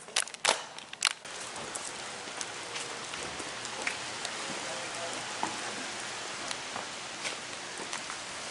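A few sharp clacks in the first second or so, as a building door is pushed open. Then a steady rushing outdoor noise sets in, with light scattered footsteps.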